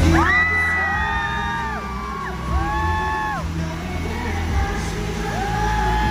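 Several fans screaming in high, held cries that overlap, each lasting about a second before dropping off, over live pop music with a steady bass through an arena sound system.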